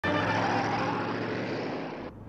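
Car towing a trailer driving past, its engine and road noise steady and slowly fading as it moves away.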